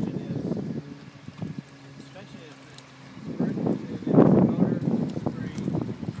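Indistinct talking from people nearby, with no clear words. The talking drops away from about one to three seconds in, leaving a faint steady hum, and is loudest about four seconds in.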